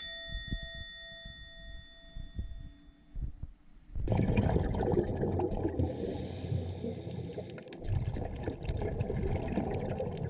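A single bell-like ding rings out and fades over about two seconds. About four seconds in it gives way to the rushing, bubbling water noise of a scuba diver underwater, which dips briefly just before it swells again.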